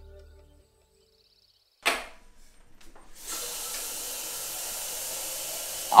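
Background music fades out, followed by a short silence and a sudden sharp sound. From about three seconds in, a steady hiss of water running from a kitchen tap into a kettle in the sink.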